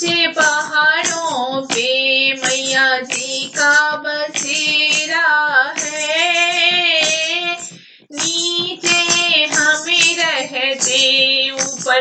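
A high voice singing a Hindi devotional bhajan to the goddess, with a short break about eight seconds in before the singing resumes.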